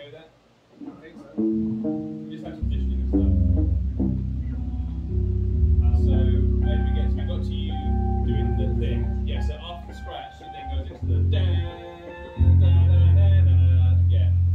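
Electric guitar and electric bass played together through amps: a few picked guitar notes, then heavy sustained low bass notes come in about two and a half seconds in. The playing breaks off briefly around ten seconds and comes back loud near the end.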